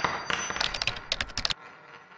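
Animation sound effects: a metallic clang with a high ringing tone, then a rapid run of sharp clicks from about half a second in until about a second and a half, then a fading ringing tail.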